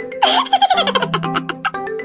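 Background music with a bouncing mallet-percussion tune, broken about a quarter second in by a loud burst of laughter, a rapid run of giggles falling in pitch that lasts over a second, a laugh sound effect dubbed over the clip.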